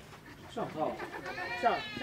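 A small child's high-pitched voice calling out in two sliding cries, the second longer and loudest near the end.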